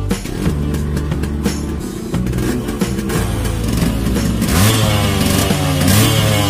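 Yamaha RX100's two-stroke single-cylinder engine running, then revved on the throttle from about two-thirds of the way in, its pitch rising and falling in quick blips.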